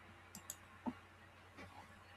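Faint clicks of a computer mouse: a quick pair of sharp clicks about a third of a second in, then a lower knock and a few softer ticks.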